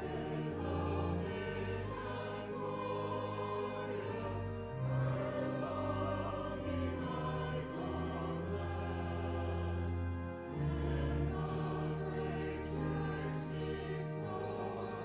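Voices singing a hymn over held accompaniment chords, the sustained bass notes changing every second or two.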